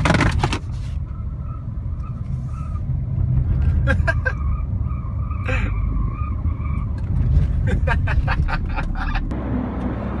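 Smart car driving, its engine and road noise heard inside the small cabin as a steady low rumble, with a man laughing briefly about four seconds in.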